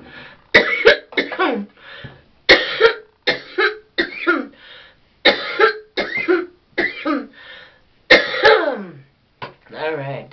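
A woman's coughing fit: a dozen or more coughs in quick runs of two to four, with a longer, drawn-out cough about eight seconds in.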